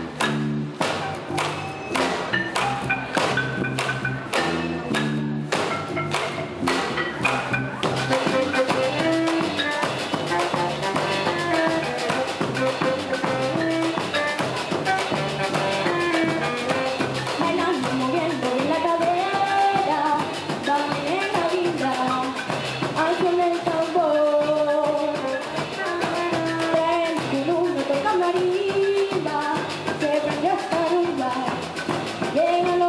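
Live youth band playing Colombian Pacific-coast music: a drum beat with bass carries the first several seconds, then a girl's voice sings the melody into a microphone over the band from about eight seconds in.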